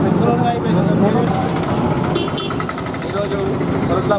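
Men's voices talking and calling out over the steady noise of street traffic, with a motor vehicle's engine running.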